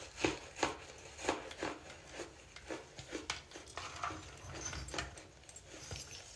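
Close-up crunching of hardened baking soda chunks being bitten and chewed, a series of short, sharp crunches a few a second at an uneven pace.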